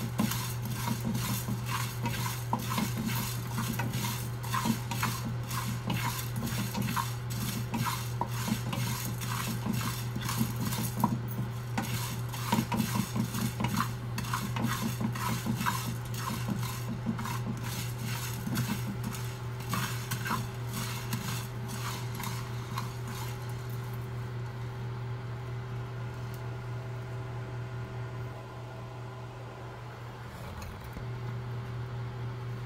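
Wooden spatula stirring and scraping whole spices (sesame, coriander, pepper, fenugreek) as they dry-roast in a metal frying pan, a quick run of scrapes and clicks that thins out over the last few seconds. A steady low hum runs underneath.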